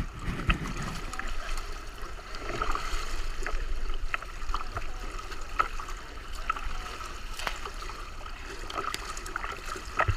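Pool water lapping and slapping against the gutter at the pool edge, with irregular small splashes from swimmers in the lanes.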